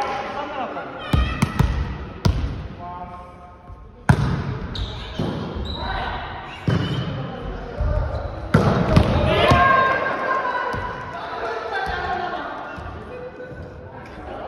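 Volleyball rally in a gymnasium: about half a dozen sharp smacks of the ball being struck and hitting the floor, ringing in the hall, mixed with players' shouted calls.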